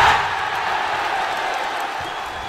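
Stadium crowd roaring for a goal, a stock sound effect under an animated goal graphic. It is loudest at the start and slowly fades.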